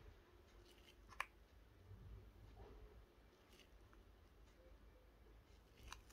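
Near silence with faint small handling sounds and one sharp click about a second in.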